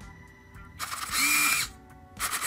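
A small electric motor whirring in one short burst, a little under a second long, starting just under a second in, with faint background music.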